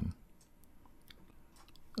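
A few faint, scattered clicks over low room tone.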